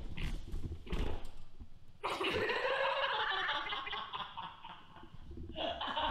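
A person's voice making a drawn-out, rough, gargle-like noise, starting about two seconds in and lasting about three seconds, after a couple of low thuds.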